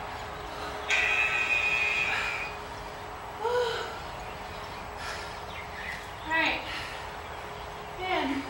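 A woman breathing hard between exercise intervals, catching her breath. There is a long, loud exhale about a second in, and short wordless voiced sounds at about three and a half and six and a half seconds.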